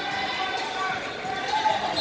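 Ambience of a busy wrestling hall: several voices calling out and a general background murmur in a large, echoing room.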